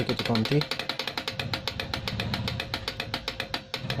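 Rapid, even clicking, roughly a dozen clicks a second, from a running-light chaser controller stepping its light-string channels, with its speed knob turned up.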